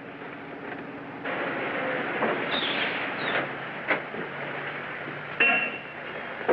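A car being driven fast: steady engine and road noise, with short high-pitched squeals, the loudest near the end.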